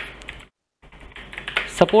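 Typing on a computer keyboard: a quick run of keystrokes, with a short pause about half a second in.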